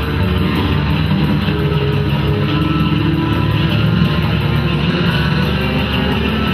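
Live rock band music with amplified electric guitar, playing steadily.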